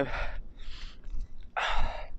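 A man breathing between words: a soft breath just after half a second and a louder one about a second and a half in, over a low wind rumble on the microphone.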